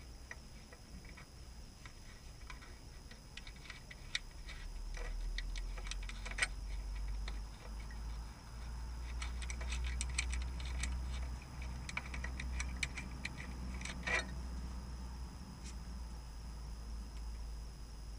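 Small, scattered clicks and ticks of fingers handling a small electrical switch and its wire ends, coming in short clusters. A low steady rumble lies underneath from about five seconds in.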